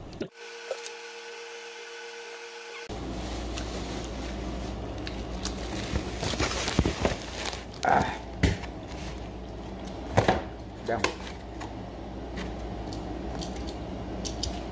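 A person eating chicken wings: scattered short clicks and brief mouth sounds of chewing and handling the food, over a steady low hum.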